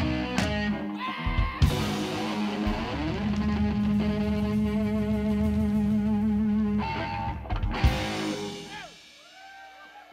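Live rock band, electric guitar, bass guitar and drum kit, playing the end of a song. A few accented hits lead into a chord held and ringing for several seconds. A final hit near the end dies away.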